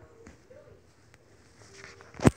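Quiet room with faint rustling from a phone being moved about, and a couple of light ticks.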